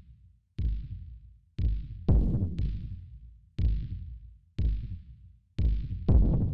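Dark ambient electronic music built on a heavy, low drum hit about once a second, each fading away like a slow heartbeat, with a doubled beat about two seconds in.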